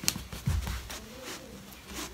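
A click, then a dull thump about half a second in, as someone moves about on the floor trying on slippers, followed by a faint steady hum.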